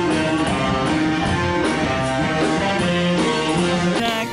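Rock music played by a band, with guitar prominent, at a steady loud level.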